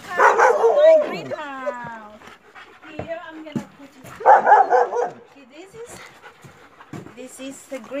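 Dogs barking and whining: a loud burst of barking early on, followed by a falling whine, then another loud burst about four seconds in.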